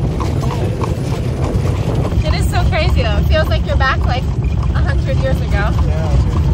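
Horse-drawn buggy underway: hooves clip-clopping at a steady walk-to-trot pace over the low rumble of the wheels and carriage. Laughter breaks in about two seconds in and again near the end.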